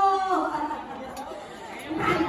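Indistinct chatter of several people in a large room. A voice trails off in the first half-second, and the talk is quieter after that.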